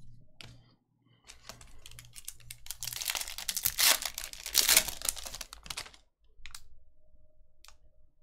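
Foil wrapper of a Bowman's Best baseball card pack being torn open and crinkled by hand, a dense crackle that builds to its loudest in the middle and stops about six seconds in.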